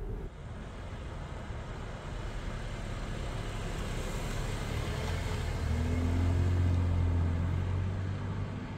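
Cupra Ateca with its 2.0 TSI turbocharged four-cylinder driving past on a wet, slushy road: tyre hiss slowly grows louder, and a low engine hum joins it for about two seconds near the loudest point before both ease off as the car pulls away.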